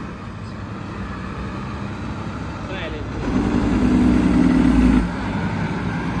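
Diesel engine of a semi truck hauling a loaded tipper trailer, running at low speed as it rolls slowly past close by. It grows louder through the middle, with a stronger steady low tone for about two seconds that stops abruptly.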